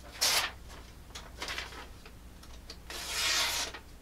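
A sheet of paper rustles briefly, then there is a longer, dry papery hiss near the end as a freshly stropped knife slices through the sheet. This is a paper-cutting test of the edge's sharpness.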